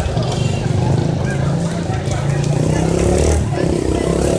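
A motor vehicle engine running steadily, most likely a motorcycle, with people's voices over it.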